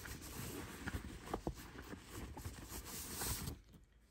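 Faint rustling of a hand rummaging inside a handbag's inner pocket, with a few light ticks near the middle; it dies away just before the end.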